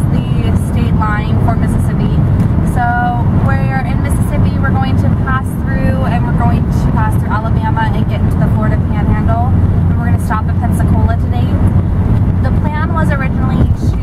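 A woman talking over the steady low rumble of a moving car, heard from inside the cabin.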